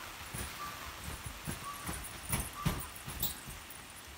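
Footsteps on the tree house's carpeted platform: a few dull thumps, the loudest two close together in the middle, with a few short faint high calls in the background.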